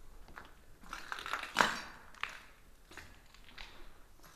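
Footsteps and scattered crunching and knocking as someone moves through a room. The loudest is one sharp crunch about one and a half seconds in, followed by a lighter click soon after.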